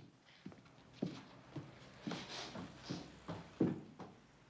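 A child's footsteps indoors, about two a second, walking and then climbing a staircase.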